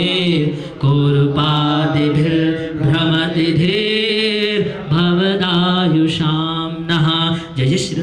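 A man chanting Sanskrit mantras in a sung, melodic recitation, holding long notes with short pauses for breath.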